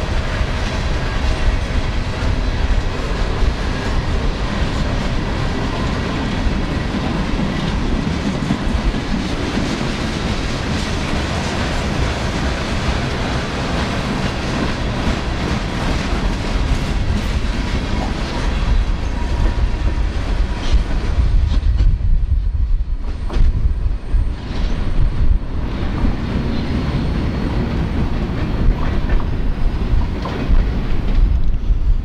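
Freight train cars rolling past close by, wheels clicking over the rail joints over a steady low rumble. About two-thirds of the way through, the high hiss of the train drops away, leaving a lower rumble with a few sharp knocks.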